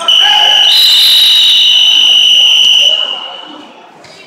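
Wrestling time-clock buzzer: one loud, steady, high-pitched tone about three seconds long that then dies away in the gym, marking the end of a period.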